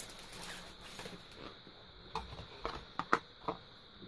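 Quiet handling of a flat card box blank being set behind a wooden heart: a soft rustle and a few light taps and clicks, clustered in the second half.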